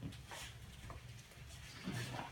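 Faint handling noise: soft rustles and a few light knocks as hands grip and set the handles of a soft fabric stretcher, over a low room hum.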